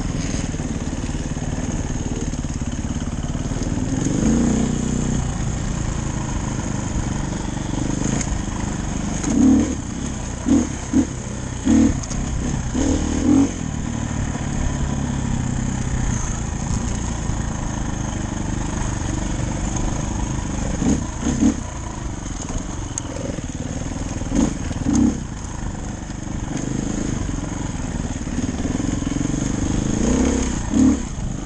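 Dirt bike engine running while being ridden along a rough forest trail, with several short bursts of throttle, a cluster of them about a third of the way in and a few more after two-thirds.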